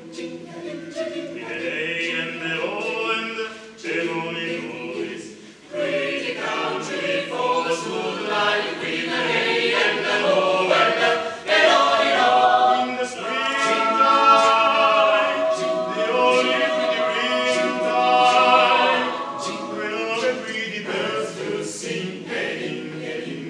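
Mixed chamber choir of women's and men's voices singing a cappella in harmony, holding sustained chords. It dips briefly a few seconds in, then swells to its loudest through the middle and eases off near the end.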